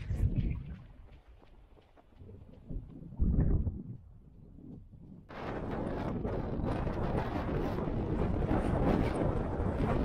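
Strong wind buffeting the microphone. Low rumbling gusts come and go in the first half, then from about five seconds in there is a steady, loud rush of wind noise.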